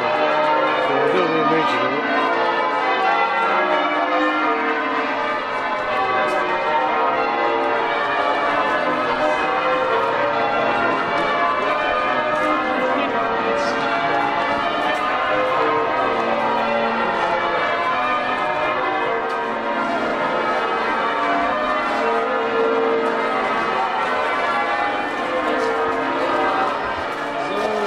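Church bells being change-rung, a continuous peal of overlapping bell strokes.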